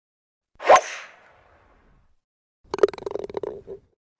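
Logo-intro sound effects: a sharp hit about half a second in with a swish that fades over about a second, then a rapid run of clicks over a steady hum for about a second near the end.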